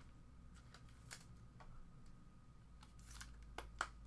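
Near silence, broken by a few faint clicks and rustles of trading cards and their packaging being handled. The sharpest clicks come near the end.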